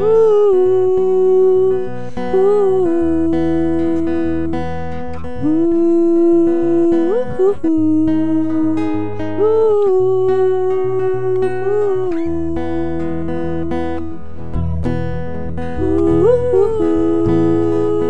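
Acoustic guitar strummed under a man's voice singing a wordless melody in long held notes.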